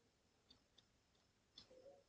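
Near silence with a few faint, short clicks of a stylus tapping on a tablet screen during handwriting.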